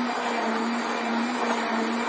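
Handheld stick blender running steadily in a tall plastic beaker, blending a banana and oat smoothie; its motor holds one even pitch throughout.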